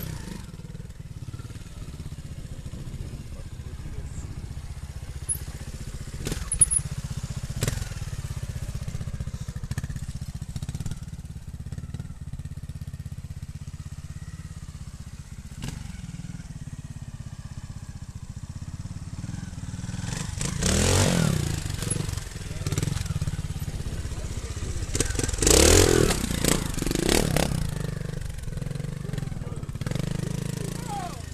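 Trials motorcycle engine running at a low idle, with two bursts of throttle, one about two-thirds of the way in and a louder one a few seconds later. A few sharp knocks sound in the first half.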